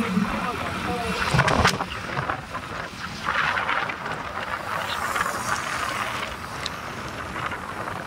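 Steady rushing noise of a vehicle moving along a paved highway, with wind on the microphone. A short spoken 'oh' comes about a second and a half in.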